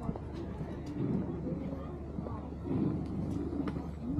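Indistinct conversation of passing pedestrians, with a few footsteps on the paved path.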